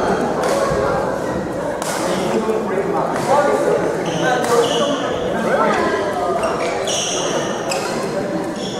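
Badminton racket strikes on a shuttlecock, a few sharp hits about a second apart in the first half, echoing in a large gym hall, with voices around them.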